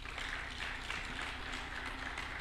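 An audience applauding, many hands clapping in a steady patter.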